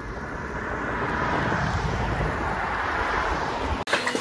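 Wind rushing over the camera microphone while riding a road bike outdoors: a steady rush that swells over the first second, holds, and cuts off abruptly near the end.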